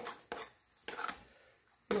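Metal spoon stirring a thick oat, yoghurt and kefir mixture in a glass bowl: a few short clicks and scrapes as the spoon knocks the bowl.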